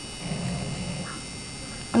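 Steady electrical hum and hiss of a small room, with a brief soft hummed "mm" from a woman's voice for under a second near the start.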